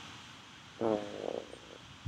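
A man's short, drawn-out hesitation sound "uh" with a falling pitch about a second in, otherwise faint room tone.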